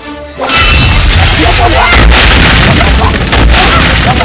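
Film soundtrack: a passage of sustained music notes is cut off about half a second in by a sudden, very loud, noisy boom-like sound effect with a heavy low rumble, which holds at full loudness with music and voices mixed under it.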